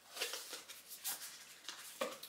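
Oracle cards being handled: a string of soft, irregular rustles and light taps, close by.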